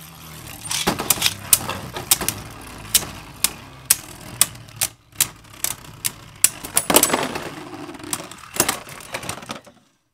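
Hasbro Beyblade Burst tops spinning in a plastic stadium: a steady whir from their tips on the floor, broken by many sharp clacks as they collide. The clashing stops shortly before the end, when one top bursts apart.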